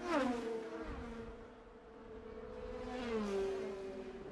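IndyCar 2.2-litre twin-turbo V6 engines passing a trackside microphone at speed, a high-pitched whine that drops in pitch as a car goes by at the start and drops again about three seconds in as another passes.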